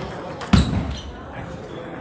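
Table tennis rally: the ball knocking off bats and the table, with one loud sharp knock about half a second in.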